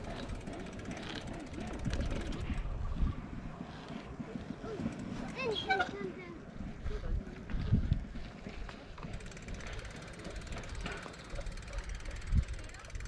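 Wind buffeting the microphone and tyre rumble from a bicycle riding along a paved path, an uneven low rumble that swells and fades.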